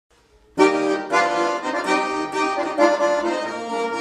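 Button accordion starting about half a second in and playing the opening bars of a folk song, chords under a melody.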